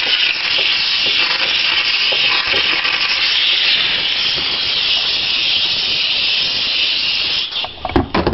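Handheld steam cleaner jetting steam, a steady hiss that cuts off shortly before the end.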